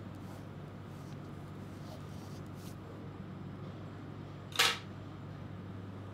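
Steady low hum of room tone, with a single short, sharp click about four and a half seconds in.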